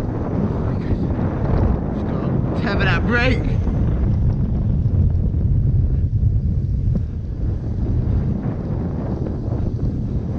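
Wind buffeting a GoPro action camera's microphone as a mountain bike rolls fast downhill, with a low rumble of tyres on asphalt. A brief rising, wavering shout comes about three seconds in.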